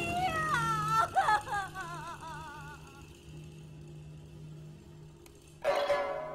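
A woman wailing and sobbing, her voice wavering, fading out after about three seconds, over a sustained music bed. Near the end a single loud plucked string note rings out.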